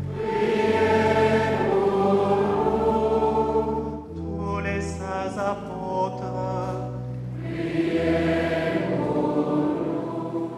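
Choir singing a slow liturgical chant in held, sustained notes, with a short break between phrases about four seconds in.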